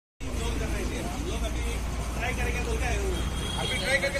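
Several people talking at once, their words unclear, over a steady low rumble.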